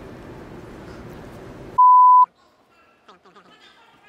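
A steady background hiss that cuts off just under two seconds in, replaced by a single loud, steady, mid-pitched beep about half a second long, the kind of tone an editor lays over a cut. After it the background is much quieter, with faint distant voices.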